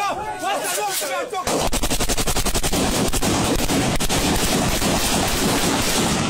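A rapid, continuous stream of sharp shots, like automatic gunfire, starting about a second and a half in and running on evenly; voices are heard before it.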